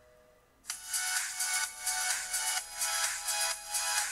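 Electronic background music that starts abruptly under a second in, with a regular pulsing beat.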